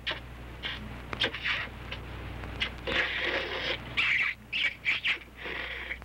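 A man sucking loudly on a lemon: a few sharp wet smacking clicks in the first second and a half, then longer hissing slurps.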